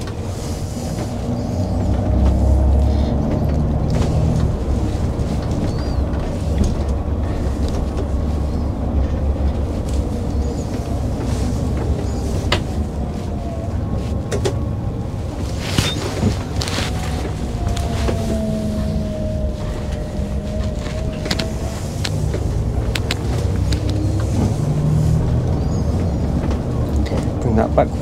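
Irizar i6 coach under way, heard from the driver's seat: steady engine and road noise with occasional cabin knocks and rattles, and a whine that glides up and down in pitch around the middle as the coach rounds a roundabout.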